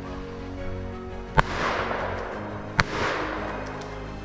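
Two hunting-rifle shots about a second and a half apart, each followed by a long echo rolling off through the woods, over background music.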